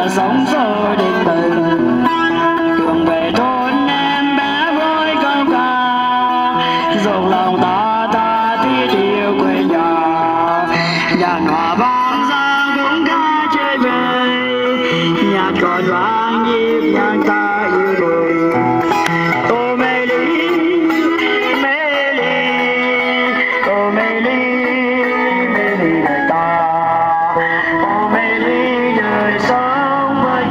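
Street busking music through a small portable amplifier: guitar accompaniment under a wavering, gliding lead melody carried on a hand-held microphone, playing continuously.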